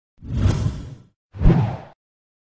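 Two whoosh sound effects from a logo animation, each swelling and fading away in under a second; the second is shorter and starts more sharply.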